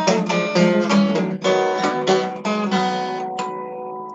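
Solo steel-string acoustic guitar playing a blues accompaniment with strummed and picked chords, then ending on a final chord that is left ringing from about three and a half seconds in.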